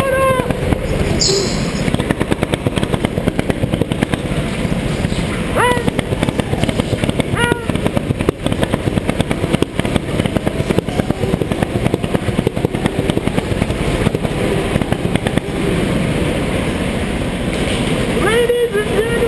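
Go-kart engine running hard around an indoor track, heard onboard as a dense, rattling drone, with two brief rising whines near the middle.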